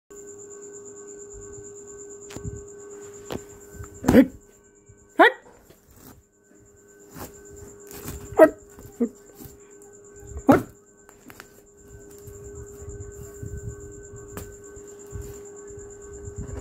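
A young goat kid bleating in short calls, about five of them in a few seconds, the loudest about four and eight seconds in, over a steady faint hum.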